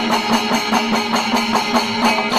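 Kerala temple percussion ensemble playing together: drums and ilathalam hand cymbals struck in a dense, fast, even rhythm over a steady held tone from the brass kombu horns.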